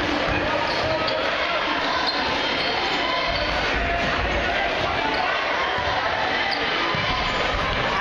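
Basketball dribbling on a hardwood gym floor, with a steady hum of crowd voices in a large gymnasium.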